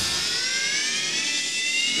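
A break in a hard rock song: the band drops out, leaving one held high note that slowly rises in pitch.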